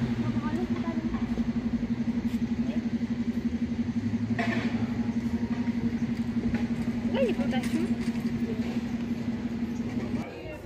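An engine idling: a steady low hum that pulses quickly and evenly, cutting off suddenly at the end.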